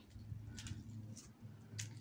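Quiet background: a faint, steady low hum with a few soft, brief taps.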